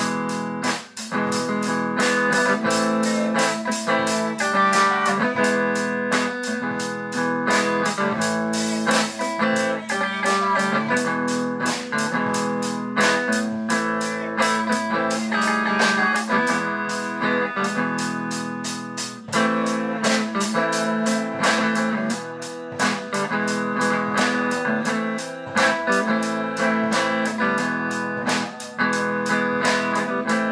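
A live band jamming: a drum kit keeping a steady beat with cymbal hits, under guitar playing.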